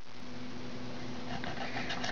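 Kitchen knife slicing raw chicken breast into strips on a cutting board, with a few faint taps of the blade on the board near the end, over a steady low hum.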